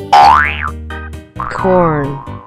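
Two cartoon pitch-glide sound effects over cheerful children's background music. Just after the start a loud one swoops up and back down, and about a second and a half in a second one slides downward.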